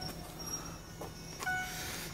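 Power tailgate of a Mercedes-Benz ML320 CDI closing under its electric motor, with a beep from its warning tone about one and a half seconds in.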